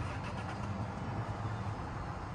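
Steady low hum of street traffic, with no distinct events.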